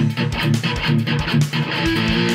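Distorted electric guitar strummed fast in a punk rock song, over a steady beat of drums and bass.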